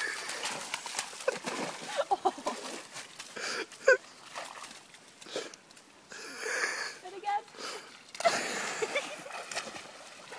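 A Portuguese water dog splashing as it wades out of a pond, then a sudden louder splash about two seconds before the end as it jumps back into the water, with indistinct voices in between.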